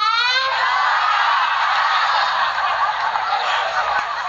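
A young girl's voice sliding upward into one long, strained high note.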